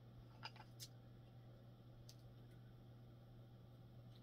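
Near silence: room tone with a steady low hum and about four faint clicks from a cushion bronzer compact being handled.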